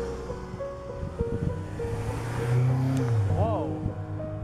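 Background music with steady repeated notes over a car driving past, its road and engine noise swelling toward the middle.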